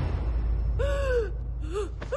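A woman gasping and crying out in distress, one long strained cry about a second in and a short one near the end, as she is seized by an attack of an old illness. A steady low rumble runs underneath.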